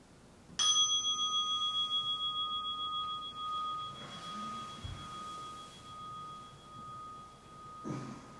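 A meditation bell struck once about half a second in, ringing on with a clear, wavering tone that slowly fades, marking the end of the sitting period. A soft thud about five seconds in and a brief rustle of the robe near the end come as the sitter bows forward.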